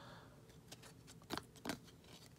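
Faint handling of a freshly opened stack of hockey trading cards: a soft rustle fading at the start, then a few short, soft clicks as the card edges are squared and shifted in the hands.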